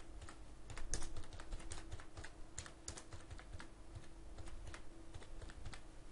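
Typing on a computer keyboard: a run of faint, irregular key clicks, several a second.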